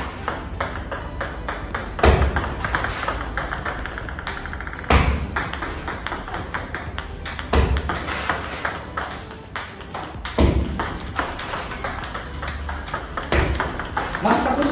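Celluloid-type plastic table tennis balls clicking on the paddle and table as short backspin serves are played one after another, five serves each marked by a louder knock and followed by quick light bounces of the ball.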